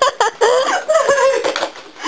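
Loud, high-pitched laughing, with long squealing stretches in the middle.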